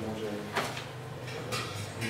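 Low voices in a small meeting room, with a short rustle or clatter about half a second in and another weaker one near the end.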